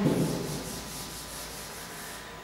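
Blackboard duster wiping chalk off a chalkboard in quick back-and-forth strokes, a dry rubbing hiss that stops near the end.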